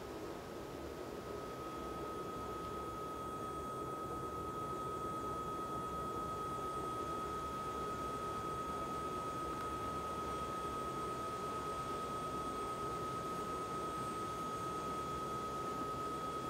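A steady single high tone held without a break, over a low even hiss.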